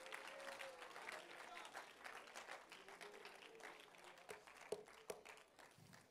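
Church congregation applauding faintly, with a few scattered voices calling out; the clapping thins and dies away, leaving a few separate claps near the end.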